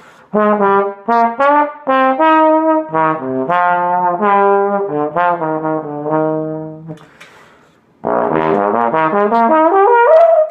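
Bach 42T large-bore tenor trombone, fitted with a lightweight Bach 42G slide and a Greg Black 5G mouthpiece, playing a slow jazz ballad melody in separate legato notes. There is a short breath pause just after seven seconds, then a louder, busier run that climbs into a held higher note at the end.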